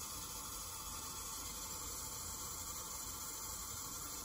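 Steady hiss of water flowing through the test rig at about 1.1 gallons per minute and running out into a sink.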